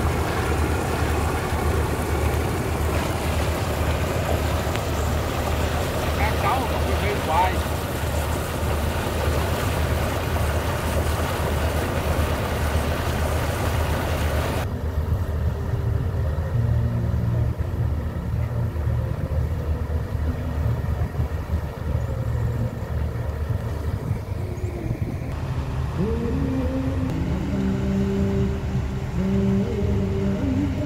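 Steady low drone of sand-pumping machinery running, with the rush of sand-laden water gushing from the pipeline for the first half. The rushing cuts off suddenly about halfway through, leaving the low drone, with a few rising tones near the end.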